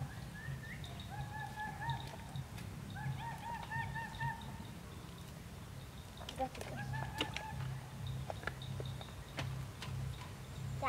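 Domestic turkey gobbling: two long warbling calls in the first half, a shorter one about seven seconds in, over a steady low hum.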